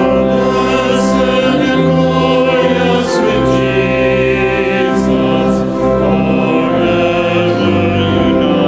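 A congregation singing a hymn together to organ accompaniment, the organ holding sustained chords beneath the voices.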